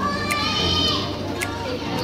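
A child's high-pitched voice calling out for about a second near the start, over background music with a steady, evenly ticking beat.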